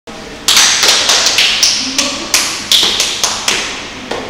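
A quick, irregular run of about a dozen sharp taps, two to three a second, each with a short ringing decay.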